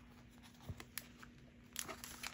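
Faint crinkling of paper and wrapped candy being handled while twine is threaded through a punched paper tag, with a few small clicks, the loudest near the end.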